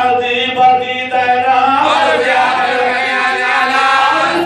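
Male voices chanting a marsiya, an Urdu elegy, in long held notes, with a lead reciter joined by the men around him.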